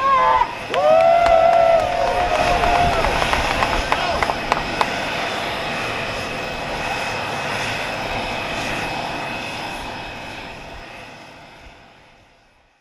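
Shouting voices at the start, then the jet engines of Air Force One, a Boeing 747-based VC-25A, running with a steady whine. The engine sound fades out over the last couple of seconds.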